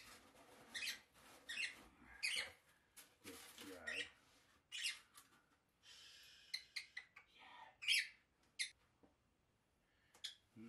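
Pet lovebird giving short, sharp, high-pitched chirps about once a second, the loudest near the end, in an excited state. A parcel's cardboard and shredded-paper packing are handled and rustle partway through.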